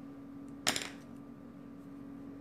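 A single sharp click with a brief ringing tail about two-thirds of a second in, as a small makeup container is picked up or opened by hand, over a faint steady hum.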